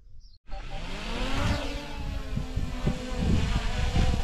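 Small quadcopter drone's propellers buzzing, starting suddenly about half a second in; the whine rises in pitch over the first second, then holds steady.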